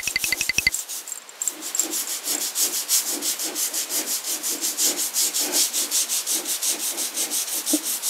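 Toothbrush bristles scrubbing blackened grout between ceramic floor tiles with plain water: fast, even back-and-forth scraping strokes. A short run of quick ticks comes in the opening second, before the scrubbing settles in.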